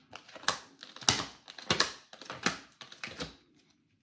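A tarot deck being shuffled by hand: a run of light, papery card swishes and taps, about two a second, that stops a little after three seconds in.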